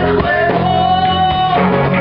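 Live rock band playing, with electric guitar and bass to the fore. One long note is held from about half a second in until about a second and a half.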